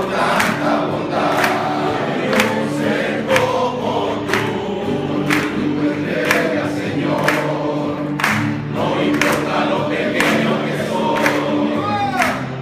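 A group of men singing together in a room, with a steady beat of sharp strikes about once a second under the voices.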